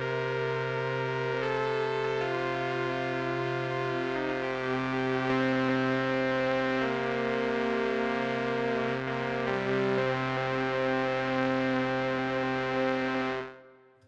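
The 'Barely Functional' patch from Spitfire LABS Obsolete Machines, sampled from handbuilt and obsolete electronic machines, played as sustained, buzzy keyboard chords. The chords change every couple of seconds and fade out near the end.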